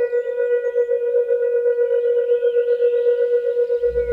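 Meditation music built on a sustained singing-bowl tone: one steady mid-pitched note with fainter overtones, wavering quickly in loudness. Faint chirps sound above it, and a deep low drone comes in near the end.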